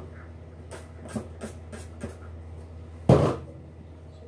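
Close noises on a phone's microphone held against the body: a few short soft rustles in the first two seconds, then one much louder thud about three seconds in, over a steady low hum.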